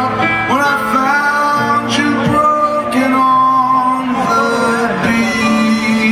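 Live music: a male singer's voice over instrumental accompaniment, sustained notes sounding all through.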